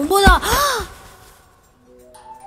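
A woman's two short startled cries as she jolts awake from sleep, each rising and then falling in pitch, with a low thud under the first.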